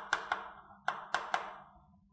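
Chalk writing on a chalkboard: about five sharp taps and short scratches as the stick strikes the board forming letters, all within the first second and a half.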